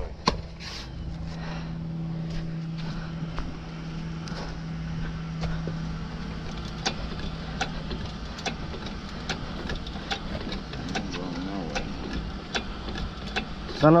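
A motor vehicle's engine running steadily, strongest in the first half and fading after, with scattered light clicks and knocks of metal being handled.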